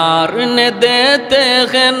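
A man singing a devotional naat solo into a microphone, in a chanting style. He holds long, slightly wavering notes that step up and down in pitch, with no instruments.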